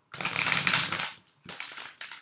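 A deck of oracle cards being riffle-shuffled by hand: a dense run of rapid card clicks for about a second, then a shorter second burst.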